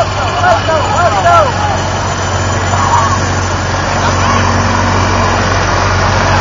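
Golf cart engine idling with a steady low hum, with people's voices nearby during the first second and a half.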